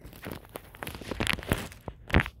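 Phone handling noise close to the microphone: scattered rustles and knocks, stronger in the second half, as the phone is moved.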